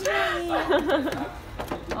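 A woman's voice drawing out a word that trails off, then a few light clicks and knocks as a framed key holder is handled and set back on a shelf.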